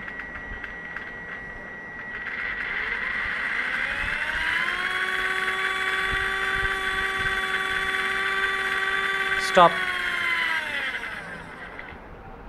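Small electric motor and spur-gear train salvaged from an HP printer whining as it is driven over radio control: the pitch rises for a couple of seconds, holds steady, then falls away as the throttle is let off near the end. A faint steady high tone and light clicks come before the spin-up.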